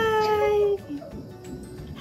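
A person's voice holding one long, high, slightly falling note that ends under a second in, followed by a quieter pause.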